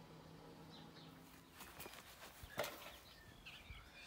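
Quiet garden ambience with faint, scattered bird chirps. A few light clicks and knocks come about halfway through.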